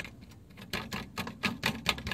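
A loose fitting under the rear of a car, shaken by hand, rattling and clanking in a fast, irregular run of sharp clicks, denser after the first half-second. The part is loose enough to clank as the car moves, and a cable tie is to be fitted to stop it.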